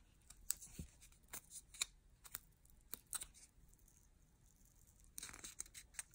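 Faint crackling and creaking of thin scored cardboard being folded over and rolled by hand, in scattered small clicks with a denser burst near the end.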